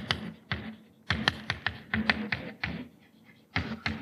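Chalk tapping and scraping on a blackboard as a line of writing is chalked up: an irregular run of sharp taps, a few a second, with a short pause about three seconds in.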